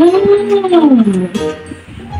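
A woman's long, closed-mouth hummed "mmm" whose pitch rises and then falls, lasting just over a second, over background music.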